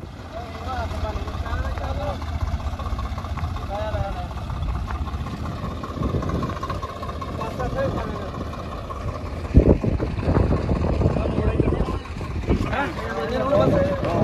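A vehicle engine running steadily, heard from on board, with a sharp knock about two-thirds of the way through.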